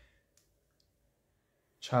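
A pause in speech, near silence with two faint short clicks, then a man's voice starts speaking near the end.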